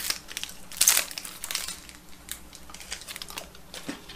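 Plastic snack packaging crinkling as it is handled, in a quick run of crackles. The crinkling is loudest about a second in and is followed by scattered smaller crackles.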